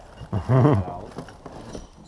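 A short spoken word, then quieter handling noise with faint clicks as parts are sorted in a cardboard box.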